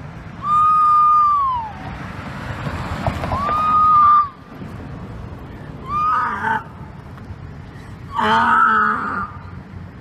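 A woman screaming in distress: four high cries, the first two long and held at a steady pitch, the last two shorter and rougher.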